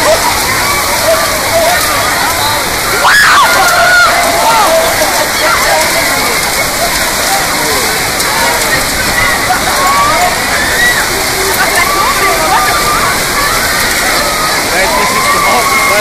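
Torrential storm rain pouring down in a steady, loud rush. Scattered shouting voices are heard through it, with one louder cry about three seconds in.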